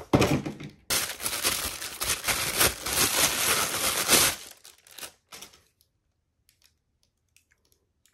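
Thin plastic wrapping crinkling and rustling as an action figure is pulled out of its box and unwrapped, stopping about four seconds in; a few light clicks follow.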